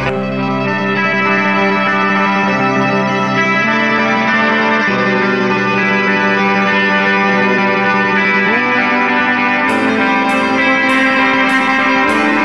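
Instrumental post-rock: sustained, effects-laden electric guitar chords ring out with the drums dropped out, with one gliding note past the middle. A steady beat of high, sharp percussive hits, about two a second, comes back in near the end.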